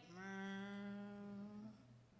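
A woman's voice holding a hummed 'mmm' at one steady pitch for about a second and a half, a vocal imitation of the sound a cookie jar makes when it is opened.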